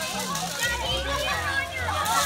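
Outdoor babble of many children's voices chattering and calling out over one another while they play, with adults' talk mixed in. A low steady hum comes in under the voices about a third of the way through.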